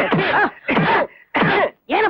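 A man's voice in three short exclamations, each about half a second long and falling in pitch, with brief gaps between them, just after the harmonium and tabla music breaks off at the start.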